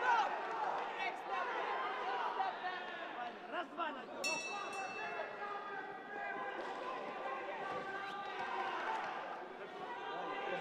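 Boxing ring bell ringing once, a short high ring about four seconds in that signals the end of the round, over shouting voices from the corners and crowd.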